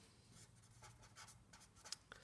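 Faint scratching of a felt-tip pen writing on paper in short strokes, with a light tick near the end.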